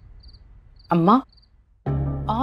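Crickets chirping in short high trills repeated about twice a second over a low hum, both fading. About a second in comes a short voiced sound with rising pitch, the loudest thing here. A woman starts speaking just before the end.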